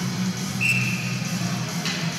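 Music with a steady low drone under it. A referee's whistle blows once about half a second in, one clean tone lasting just under a second.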